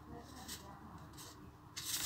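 A paper exam sheet being handled and turned over: soft rustles, then a louder crisp rustle with a sharp snap near the end as the page flips.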